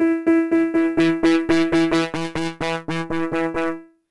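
A Reason Combinator layering an NN-XT sampled piano with a Subtractor synth patch, playing one note repeated about five times a second. The notes stop just before the end.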